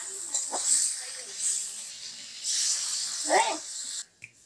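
Drumstick and potato pieces frying in spice paste, sizzling in a hot iron wok as a steel spatula stirs them; the hiss swells over the last second and a half. Short voice-like sounds break in about half a second in and again near the end.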